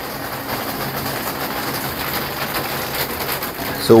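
Rain falling steadily, an even hiss that grows a little louder, with a faint low hum beneath it.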